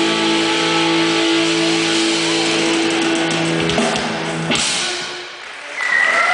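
Rock band playing live with electric guitars, holding one long final chord that stops about four and a half seconds in, ending the song. The level drops briefly, then rises again right at the end as the crowd starts to react.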